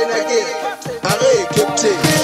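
Music track in a stripped-back passage with the bass and kick dropped out: swooping, pitch-bending melodic lines over held tones.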